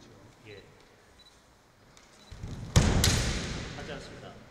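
A kendo attack on a wooden floor: about three-quarters of the way in, two sharp cracks of bamboo shinai striking, a quarter-second apart, together with a thud of the stamping front foot. Loud shouts (kiai) go on after the strikes and fade toward the end. The rest is a quiet hall.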